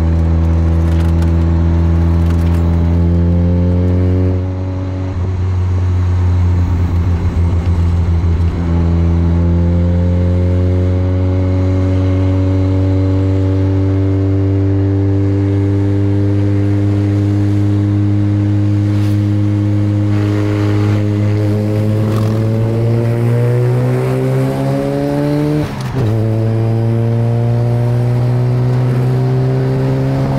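Mazda RX-7 FD's rotary engine pulling on the road, its pitch climbing slowly and changing briefly a few times as it shifts gear, with wind rushing in at the open window.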